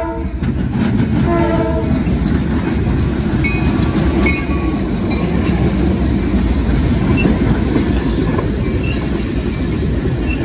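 CSX diesel-electric freight locomotive passing close by. A short horn blast sounds about a second in, over the steady heavy rumble of the diesel engine and wheels on the rails.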